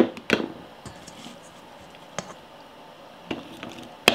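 A slotted spoon tapping and scraping against a plastic canning funnel and glass jar as cooked jalapeño slices are spooned in: a few short, soft clicks, several together at the start and single ones spaced out after.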